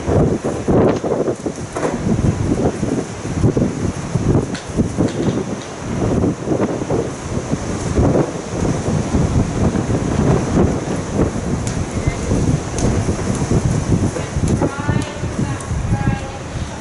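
Loud rumbling wind noise buffeting the microphone, over the irregular muffled thuds of a horse cantering and jumping on an arena's sand surface.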